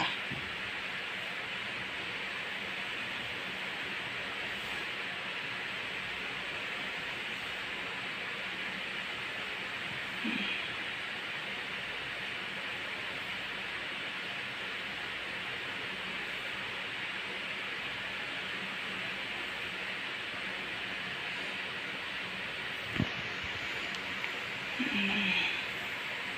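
Steady airy hiss of an oxygen machine running and feeding a sleeping patient's face mask. There is a brief faint sound about ten seconds in and a single click near the end.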